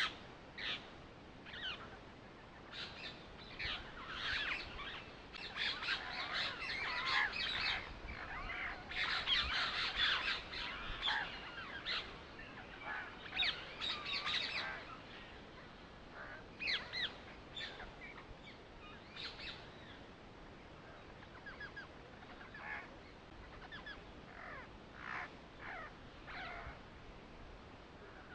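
Birds chirping, many short calls overlapping, busiest in the first half and thinning out later.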